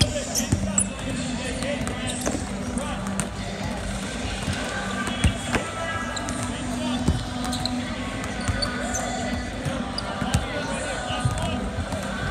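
Several basketballs bouncing on a hardwood court in a large arena, irregular thuds as players shoot and dribble, with voices and arena music behind.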